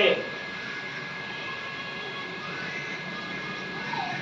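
Steady background noise, an even hum-like haze with a faint thin high tone running through it, and no distinct sound events.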